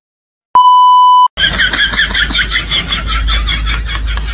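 A single steady electronic beep tone, lasting under a second, after a brief silence. It is followed by a fast, even series of short high sounds, about five a second.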